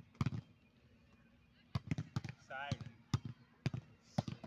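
A volleyball being hit during a rally: irregular sharp smacks, several in quick succession in the second half, with a short shout from a player in the middle.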